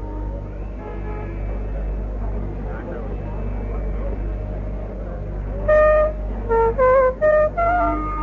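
Carnatic bamboo flute in raga Shuddha Saveri coming in about six seconds in with a run of short, stepped notes, after a stretch of low murmur and hiss. A steady low hum from the old recording lies under it all.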